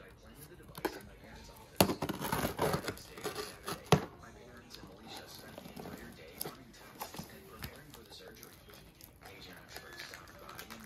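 Packing tape being slit and torn off a small cardboard box: sharp snaps and a crackly rip about two seconds in, then quieter scraping and rustling of the tape and cardboard.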